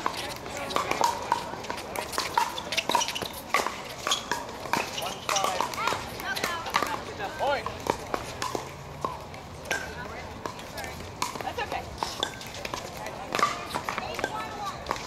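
Plastic pickleballs popping off hard paddles on several courts at once: sharp, irregular knocks a few times a second, over a background of voices.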